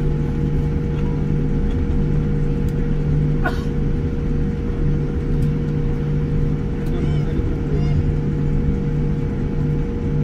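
Cabin noise inside a Boeing 787-9 rolling slowly on the ground after landing: a steady low rumble with a constant hum. A short rising squeak cuts through about three and a half seconds in.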